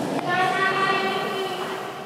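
A voice holding one long call at a steady pitch, fading out after about a second and a half, in the echo of the large rink hall.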